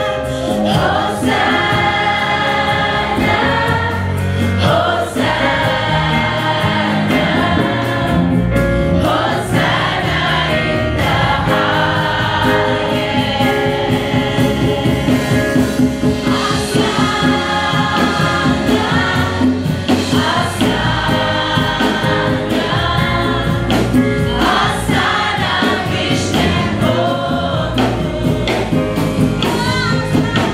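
Gospel choir and lead singers singing a worship song live over a steady beat, the full ensemble loud and continuous throughout.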